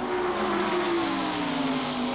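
A pack of restrictor-plated ARCA stock cars racing at full speed, their engines blending into one steady drone that slowly falls in pitch as the cars run past.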